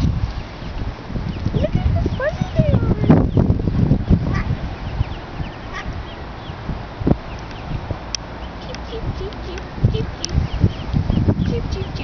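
Mallard ducklings peeping: many short, high chirps, scattered and irregular.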